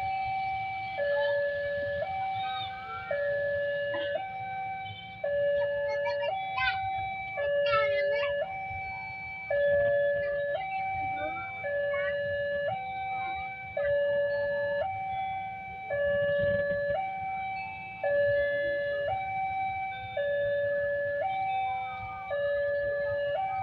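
Railway level-crossing warning alarm sounding a steady two-tone electronic high-low signal, each tone held about a second and repeating, warning that a train is approaching the crossing.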